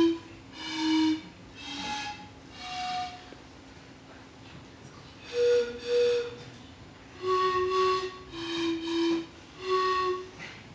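Homemade pan flute blown one pipe at a time: about ten short, breathy notes with a pause of about two seconds in the middle, the last several notes paired and repeated.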